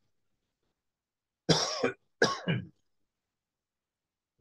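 A man coughing twice, two short bursts about half a second apart, starting about a second and a half in.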